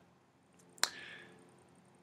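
Near silence broken by a single sharp click a little under a second in, followed by a brief faint breath-like sound.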